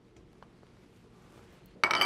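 Faint scraping and a few light taps of a spatula against a small bowl while a sourdough starter is scraped into a stand mixer's steel bowl, then a sharp clink near the end.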